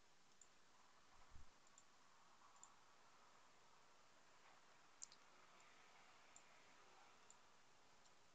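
Faint computer mouse clicks over near-silent room tone: a soft thump about a second and a half in, a sharper single click about five seconds in, and a few fainter ticks scattered between.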